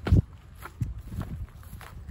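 Footsteps in sneakers on gravelly dirt: one heavy step right at the start, then several lighter, uneven steps.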